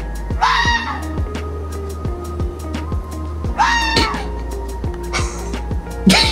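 Red fox giving two short, harsh barks about three seconds apart, each rising and then falling in pitch, over background music with a steady beat.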